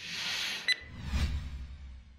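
Outro graphic sound effects: a hissing whoosh, a sharp click about two-thirds of a second in, then a low rumbling hit that fades out.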